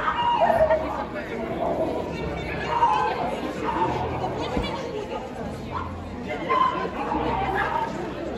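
People talking nearby over a general background of crowd chatter in a large hall.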